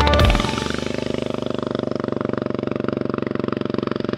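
The music ends about half a second in, leaving a 2008 Kawasaki KLR 650's single-cylinder engine running with a steady, rapid, even pulse.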